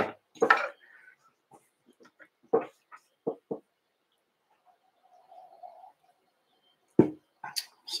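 A few short quiet sips from a coffee mug, with small handling noises, then a single sharp knock about seven seconds in.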